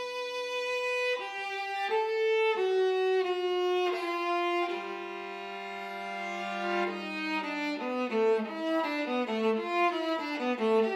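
Solo viola playing: held bowed notes changing every second or so, then a long held two-note chord, then from about eight seconds in a quicker run of notes moving up and down.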